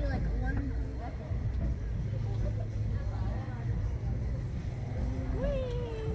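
Scattered, indistinct voices over a steady low rumble.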